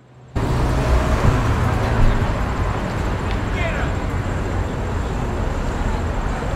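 Street traffic: a steady rumble of passing cars and a bus. It starts abruptly about half a second in, with a short high squeak about midway.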